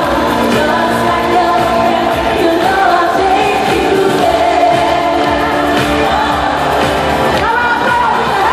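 Live pop concert: a woman singing a sliding melody over loud amplified backing music, heard from among the audience in an arena.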